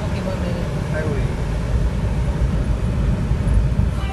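Low, steady rumble of a car heard from inside the cabin, engine and road noise, with faint voices in the first second.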